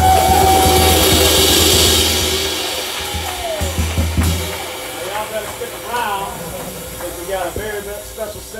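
Live drum kit: a cymbal crash and wash over a low drum rumble, with a held tone above it, ringing out and fading over the first two or three seconds. Another short low rumble comes about four seconds in, then voices in the room.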